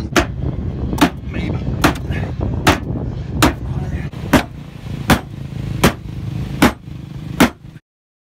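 A hammer striking the sheet-steel front fender lip of a Toyota Tacoma, about ten hard blows in a slow, steady rhythm a little faster than one a second, beating the lip back so it stops cutting the 35-inch tire. The blows stop suddenly near the end.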